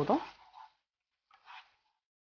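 A spatula stirring thick gongura chicken gravy in a pan: one short, soft squelch about a second and a half in, just after a woman's word ends; otherwise near silence.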